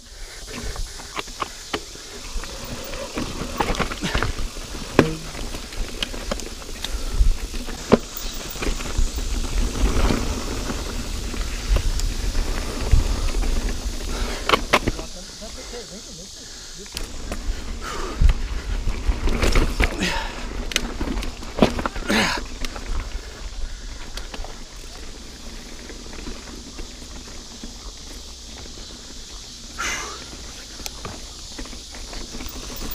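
Niner Jet 9 RDO mountain bike riding dirt singletrack, heard from the bike: tyres running over dirt and rock, many sharp clicks and rattles from the bike over bumps, and wind on the microphone. It grows quieter in the last several seconds as the pace drops.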